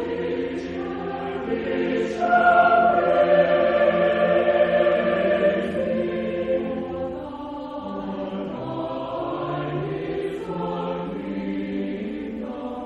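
Church choir singing slow, sustained chords in several parts, swelling louder about two seconds in and easing back after about six seconds.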